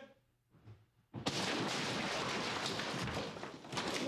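A man crashing through a wall during a stunt: a sudden loud crash about a second in, followed by continuous clattering and rushing noise of breaking wall material and falling debris.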